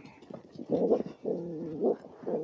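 A few short pitched animal calls, one held steady for about half a second.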